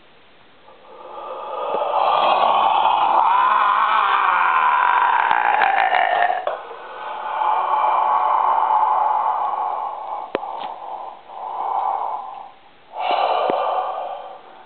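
A man breathing loudly and forcefully through a wide-open mouth: one long breath lasting about five seconds, a second of about three seconds, and two short ones near the end.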